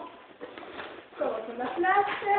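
Speech only: after a quiet first second, a man's voice says a short word or two in French.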